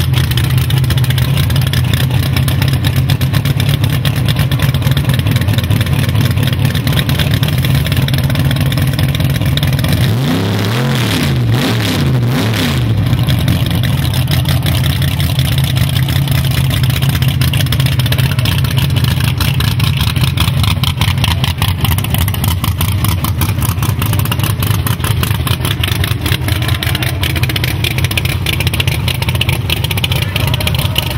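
A Chevy II Nova drag car's engine running loud and steady at a lumpy idle as it rolls to the line. About ten seconds in, its pitch wavers down and back up for a couple of seconds.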